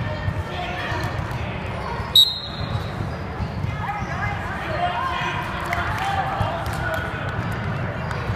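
Basketball game sounds in a gym: a basketball bouncing on the hardwood floor and shoes striking and squeaking on the court under spectators' voices, with one short, sharp referee's whistle blast about two seconds in.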